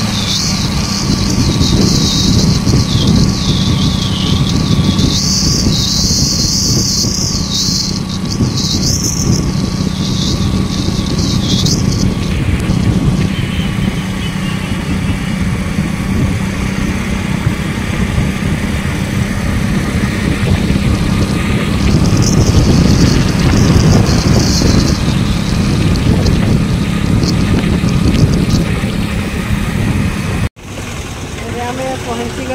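A road vehicle on the move: a steady engine drone under a loud rush of road and wind noise. The hiss swells for the first dozen seconds and again a little past twenty seconds.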